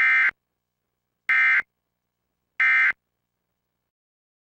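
Emergency Alert System end-of-message tones: three short, identical bursts of the SAME digital data code, each a fraction of a second long and about 1.3 s apart. They signal the end of the alert.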